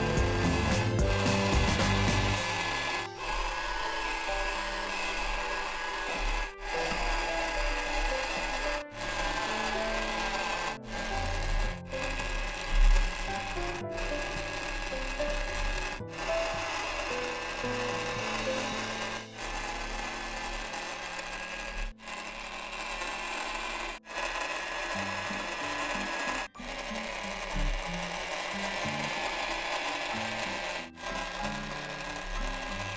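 Small battery-powered motor of a toy pottery wheel running, with a slightly wavering whine, while wet hands rub against clay on the turning wheel head. Brief dropouts break the sound every two to three seconds.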